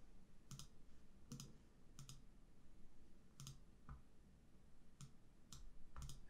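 Faint computer mouse clicks, about eight, coming irregularly over near-silent room tone.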